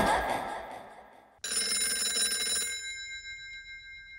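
Background music fading out, then, about a second and a half in, a bell ringing rapidly for about a second before ringing out slowly.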